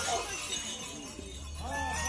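Jingling and clinking from a street procession of costumed folk mummers, with faint voices. A run of loud beats stops right at the start.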